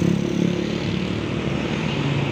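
Road traffic passing close: a heavy vehicle's diesel engine drone, easing a little after the first second, with motor scooters going by.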